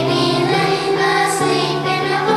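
Children's choir singing in unison with musical accompaniment, holding each note before moving to the next.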